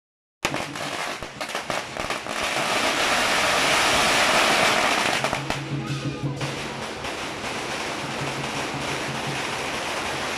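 A string of firecrackers going off on the street: scattered sharp cracks that build into a dense, continuous crackle, loudest in the middle, then thinning out after about five seconds. Music with a pulsing low tone plays under it in the second half.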